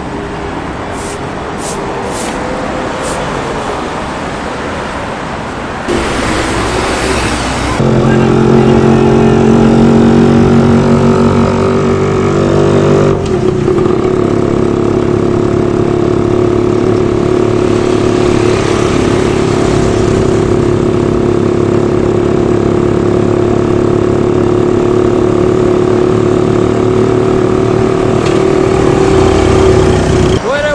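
City street traffic noise, then from about eight seconds in a vehicle engine running at a steady, even pitch, heard from on board while riding through traffic.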